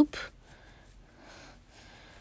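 Faint swishing of a wooden spoon stirring thin, simmering soup in a large stainless-steel pot, with a brief breath at the start.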